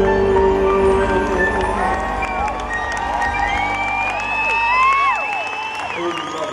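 A live band's final held chord dying away over the first few seconds while a large crowd cheers and whistles, with many rising and falling whistles through the second half.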